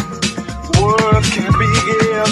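Soulful house music from a DJ mix: a steady kick-drum beat with hi-hats, and a melodic line that bends in pitch about a second in.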